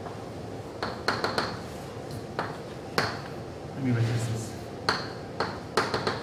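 Chalk tapping and clicking against a blackboard during writing: a run of sharp, irregular taps, each with a short ring.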